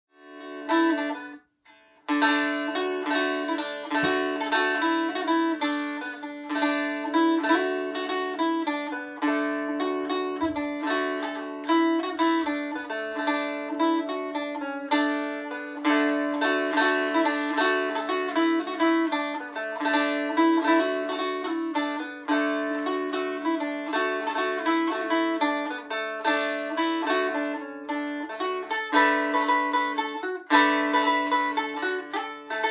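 Mango wood stick dulcimer, a three-string fretted instrument, plucked: a brisk traditional melody played over a steady ringing drone. A single note sounds first, and the tune starts about two seconds in.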